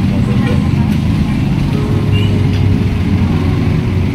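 Busy city street traffic: a loud, steady low engine rumble from passing cars, motorcycles and buses.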